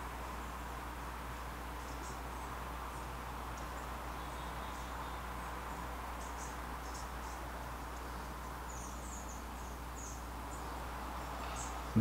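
Quiet room tone: a steady low hum with faint, scattered high-pitched ticks.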